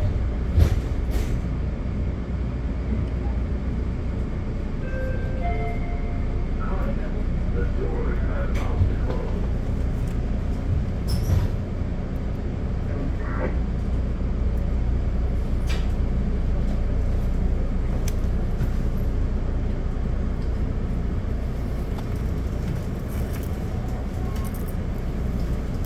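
Steady low rumble inside a Metra Budd gallery car while the train stands at a station, from the idling EMD SD70MACH diesel locomotive and the car's equipment. There are a few short clicks and knocks, and faint voices around the middle.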